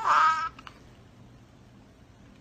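A long-haired cat giving one meow, "MeAAHh", about half a second long, at the very start.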